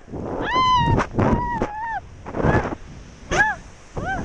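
A woman's high-pitched shrieks of excitement while swinging on a bungee cord, about five short squeals and yelps, the longest about half a second in. Wind rushes over the body-worn microphone underneath.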